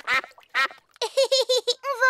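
Cartoon ducks quacking: two quacks in the first half second, then a quick run of short calls from about a second in.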